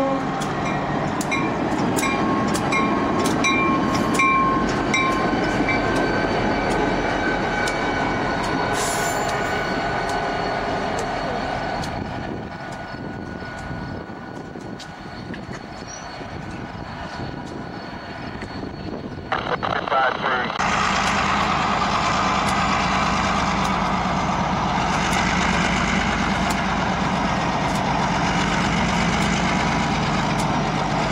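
Diesel locomotives rumbling past a grade crossing, the tail of a horn chord ending right at the start while the crossing bell clangs about twice a second for the first several seconds. About 20 seconds in, the sound jumps to a louder, steady locomotive engine and wheel rumble as a locomotive passes close by.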